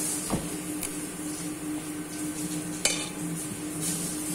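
Steady hum and hiss of kitchen ventilation under the small sounds of a kitchen knife working a pumpkin: a dull knock about a third of a second in, and a sharp knife-on-board clack near the three-second mark, the loudest sound.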